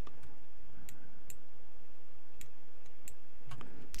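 Computer mouse clicking: about six sharp, irregularly spaced clicks over a faint steady hum.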